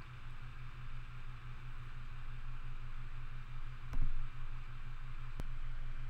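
Room tone from a desk microphone: a steady low electrical hum under faint hiss, with a soft click about four seconds in and a small tick a little later.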